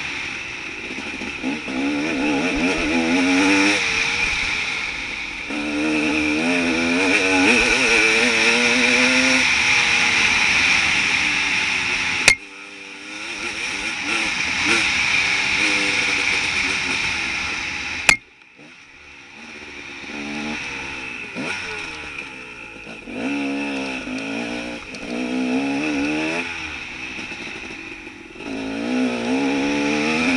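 Enduro dirt bike engine revving up and down as the throttle opens and closes, pitch rising and falling again and again. Two sharp clicks come about 12 and 18 seconds in, each followed by a brief drop in the engine sound.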